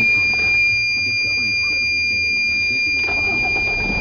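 A dashboard warning buzzer holds a steady high-pitched tone while the 2003 Dodge Sprinter's five-cylinder turbodiesel is cranked and started, its low rumble underneath.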